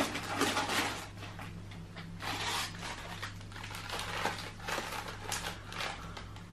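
Plastic snack wrappers rustling and crinkling in irregular bursts as hands rummage through a box of packaged snacks and lift one out.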